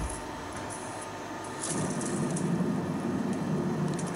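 Skew rolling mill running as its rolls form a red-hot billet into a preform: a low, steady mechanical rumble that comes in about one and a half seconds in.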